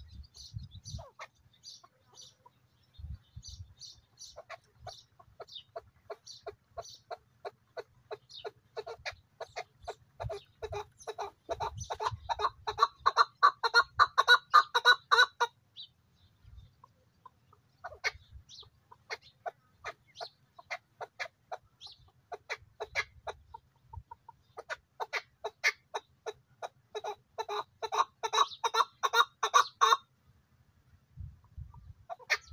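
Chukar partridge calling: a long run of rapid clucking notes that grows louder, breaks off about halfway through, then starts again and builds up once more near the end. A few softer, higher notes come before the first run.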